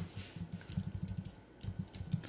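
Keys tapped on a computer keyboard in two quick runs with a short pause between, as digits are deleted and retyped.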